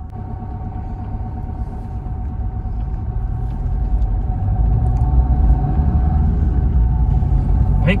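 Maruti Swift 1.3-litre DDiS four-cylinder turbodiesel running just after start-up, heard from inside the cabin. Its low rumble grows steadily louder as the automatic car pulls away.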